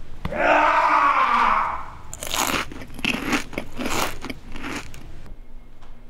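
A loud rushing noise for about two seconds, then a run of crunching sounds like something being chewed or bitten, cut off suddenly about five seconds in.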